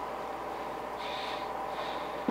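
Steady low hum and faint hiss of room tone, with no distinct event.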